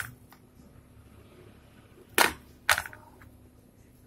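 A knife cutting into a set chocolate-topped biscuit cake: two sharp clicks about half a second apart, a little past halfway, against a quiet background.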